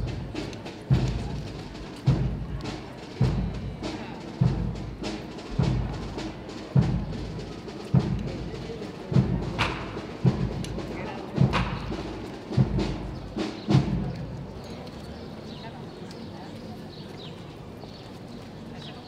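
Slow, steady beating of a deep procession drum, struck roughly once a second with an occasional doubled stroke, stopping about fourteen seconds in.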